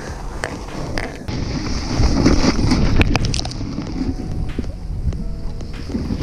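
Wind buffeting an action-camera microphone as a low rumble, with scattered knocks and rustles of snow and clothing, under faint background music.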